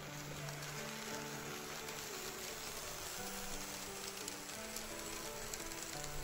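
Soft background music of slow, held notes over a faint, steady rolling noise of model trains running along the track.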